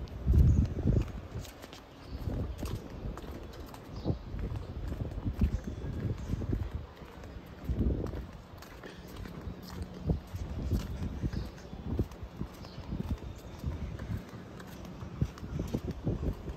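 Footsteps of a person walking along a paved path, heard as irregular low thumps close to the microphone.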